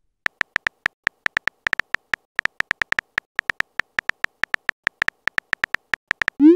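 Phone keyboard typing sound effect from a texting-story app: a rapid, slightly uneven run of short, pitched clicks, about six a second, one per letter as a text message is typed out.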